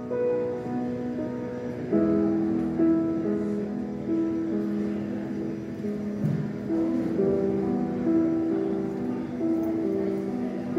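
Baby grand piano played live in a tall open atrium: a slow piece whose notes ring on and overlap, a new note or chord starting about once a second.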